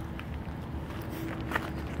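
Footsteps on gravel, fairly faint, over a steady low background rumble.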